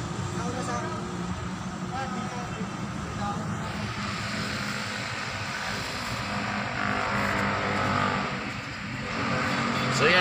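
A car engine running steadily, heard from inside the cabin, with faint voices outside. The noise swells for a moment about two-thirds of the way through.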